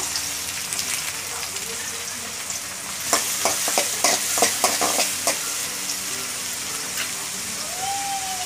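Garlic cloves and sliced onion sizzling in hot oil in a metal kadai, a steady hiss. About three seconds in, a utensil stirring the pan gives a run of sharp clicks and scrapes for a couple of seconds.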